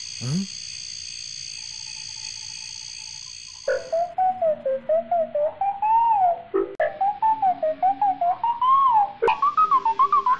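A short rising swoop, then from about four seconds in a wavering whistle-like melody that slides up and down in pitch in quick pulses, climbing higher near the end: a cartoon sound effect on the soundtrack of a stop-motion animation.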